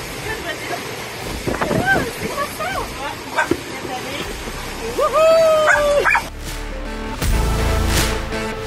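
Excited shouts, whoops and laughter over steady wind and water noise, ending in one long held cry. About six seconds in, background music with a steady beat takes over.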